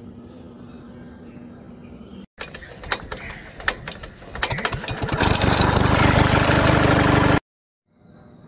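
A faint steady hum, then after a hard cut an engine starting: a run of sharp clicks and sputters that builds over about two seconds into a loud, steady run, which cuts off suddenly near the end.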